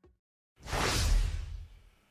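A whoosh transition sound effect: a rush of noise with a deep low undertone that swells up about half a second in, peaks, and fades away near the end.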